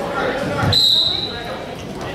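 Voices in a large gym hall, then a dull thump and a sharp, high-pitched whistle tone that starts suddenly and fades away within about half a second.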